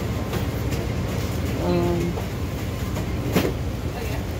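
Steady low rumble of shop background noise, with a short hummed voice sound about halfway through and a sharp click near the end.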